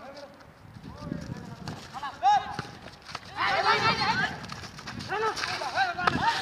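Several men shouting and calling out together during a street football game, loudest about three and a half seconds in. A sharp thump about two seconds in, with lighter knocks of feet and ball on pavement around it.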